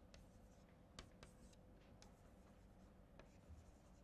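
Chalk writing on a blackboard, very faint: a few light taps and scratches of the chalk over near silence.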